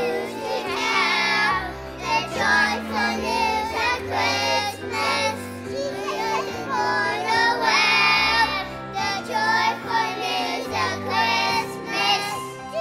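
A choir of young children singing a song in unison, with piano accompaniment holding low notes beneath the voices.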